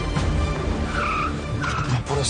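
A car pulls up and brakes to a stop, with two short squeals from the tyres or brakes about a second in and again near the end. Background music plays under it.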